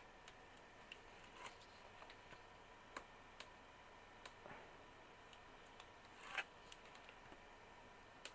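Faint, scattered small clicks and ticks with a brief paper rustle about six seconds in: the backing being peeled off double-sided score tape along the edge of a notebook cover.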